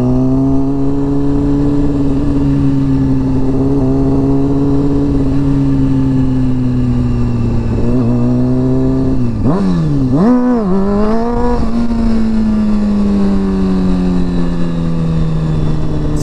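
Honda CBR sport bike engine pulling steadily at road speed, heard from the rider's seat with wind rumble on the microphone. A little past halfway the engine note dips and climbs back twice in quick succession, then settles into a slightly lower, slowly falling note.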